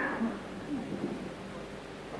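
Steady background hiss from a low-quality recording, with a few faint, brief voice sounds in the first second.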